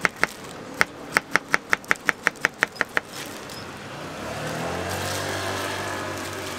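A knife cuts a banana and taps the plastic cutting board in quick even strokes, about six a second, with a brief pause near the start. The cutting stops about three seconds in. A low engine hum then rises and runs steadily.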